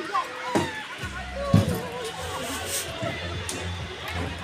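People's voices chattering, with a few thuds of footsteps on the deck of a suspension footbridge. Music plays behind.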